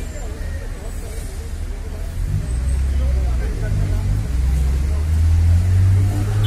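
A motor vehicle's engine running close by: a low rumble that grows louder from about two seconds in, loudest near the end.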